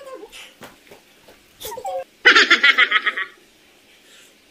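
A woman laughing: a few quiet vocal sounds, then a loud burst of rapid giggling about two seconds in, lasting about a second.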